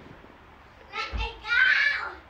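A girl's high-pitched voice exclaiming in two bursts starting about a second in, the second longer and louder, with a dull low bump under the first.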